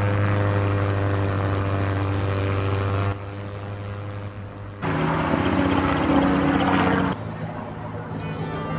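A small propeller airplane flying overhead with a steady engine drone; about five seconds in, after a cut, a helicopter passes with its rotor beating fast. The aircraft sound drops away near the end.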